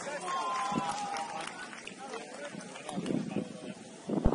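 Match-side ambience from an open-air football pitch: distant voices of players and spectators shouting, with one drawn-out call lasting about a second near the start, followed by shorter shouts.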